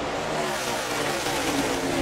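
A pack of NASCAR Xfinity Series stock cars racing past at speed. Their V8 engines run together in one steady wash of engine and tyre noise, with a few engine notes falling slightly in pitch as cars go by.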